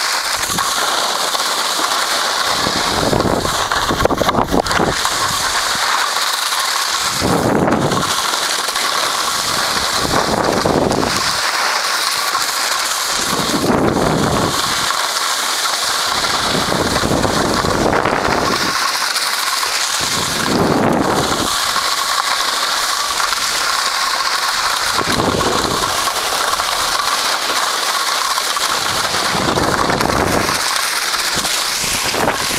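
A steady scraping hiss of edges sliding over hard-packed groomed snow during a run down the slope, with wind buffeting the microphone in low swells about every three seconds.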